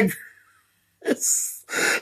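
A man's short breathy laugh about a second in, after a brief dead silence, with a second quick breath just before he speaks again.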